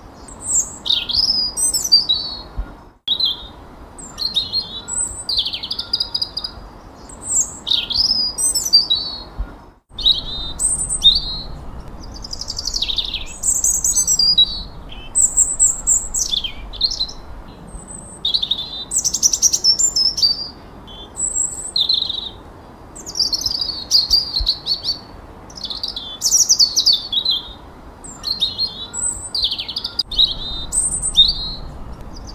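Songbirds singing: a dense, overlapping run of short high whistles, downward-sweeping chirps and trills, with two brief dropouts about three and ten seconds in.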